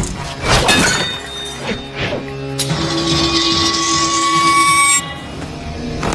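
Film swordfight sound effects over the score: several sharp hits in the first two seconds, then a sustained ringing hiss with a steady tone from about two and a half seconds in that cuts off suddenly near five seconds.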